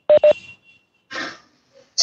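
Two short electronic beeps in quick succession, both at the same pitch.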